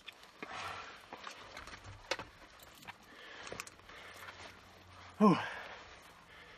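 A few hissing breaths through a firefighter's breathing-apparatus (SCBA) face mask, with sharp clicks and rustling as the mask straps are loosened and the mask is pulled off. Near the end comes a man's exhaled "whew".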